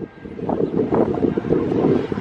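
Wind buffeting the microphone: a loud, uneven low rumble with no clear pitch.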